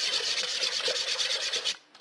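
A wooden stick stirring thick seam sealant, thinned with synthetic solvent, in a metal can: a steady scraping stir that stops shortly before the end.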